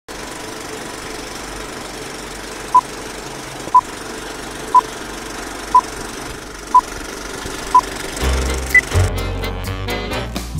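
Old-film countdown intro sound effect: a steady rattling film-projector run with six short, sharp beeps one second apart as the leader counts down, then one higher-pitched beep. Music with bass and drums starts near the end.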